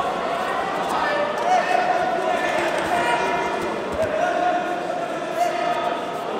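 Voices calling out and shouting in drawn-out cries, echoing around a large sports hall, with scattered light thuds.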